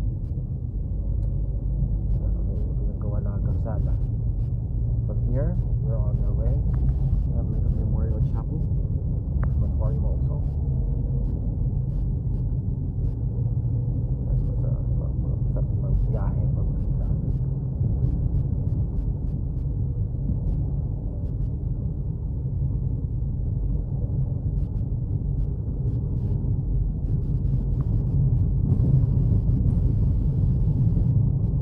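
Steady low rumble of road and engine noise inside a car's cabin while it drives through city traffic.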